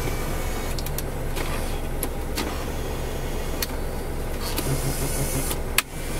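Electric power seat motor in a 1993 Chevrolet Corvette running steadily as the seat is adjusted, with a few clicks along the way. It stops briefly just before the end.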